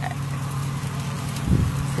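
Ribs sizzling faintly on a charcoal grill over a steady low hum, with a single low thump about one and a half seconds in as the meat is shifted with metal tongs.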